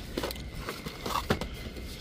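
Cardboard cracker boxes handled on a store shelf: a few light, irregular taps and scrapes as a box is pulled out, over a low steady hum.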